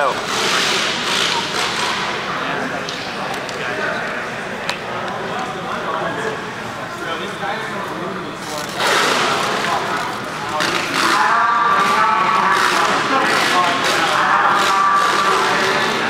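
Indistinct voices and background chatter echoing around a large gymnasium hall.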